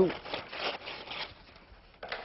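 Brown paper being cut from its roll: a rustling, tearing noise for about a second, then fainter rustles.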